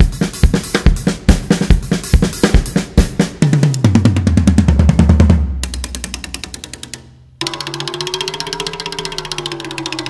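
Recorded music with a drum kit playing a steady beat. About three and a half seconds in, the beat breaks for a low bass slide that falls in pitch and fades away. Near seven and a half seconds a quieter passage begins: fast, even ticking over a held, wavering tone.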